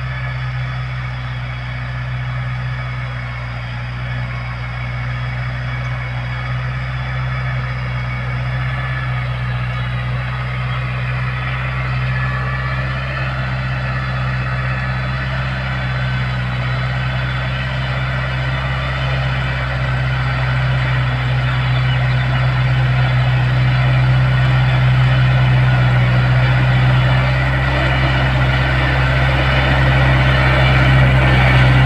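Iseki NT548F tractor engine running steadily under load as the tractor drags a bed-forming plate through tilled soil, growing gradually louder as it approaches.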